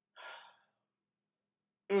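A man's breathy sigh, a soft exhale lasting about half a second, followed near the end by the start of a hummed "mmm" of reaction.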